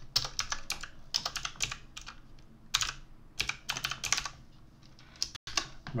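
Typing on a computer keyboard: quick bursts of keystrokes, with a pause of about a second near the end.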